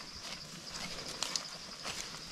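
Grass being cut by hand close to the microphone: a few short, crisp snaps, two of them close together just past the middle, over a steady high-pitched insect drone.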